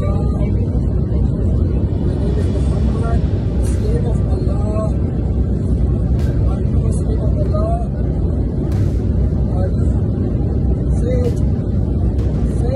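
Steady loud low rumble of airliner cabin noise, with a man's voice speaking faintly over it and a few brief clicks.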